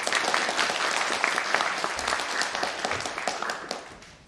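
Audience applauding, many hands clapping together, the applause dying away near the end.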